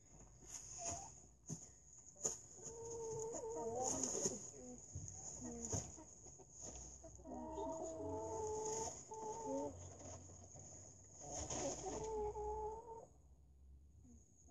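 Domestic hen clucking in three bouts of short pitched calls, with a few sharp clicks in the first seconds.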